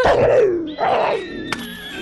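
A small cartoon creature gives two short cries, each falling in pitch, over background music.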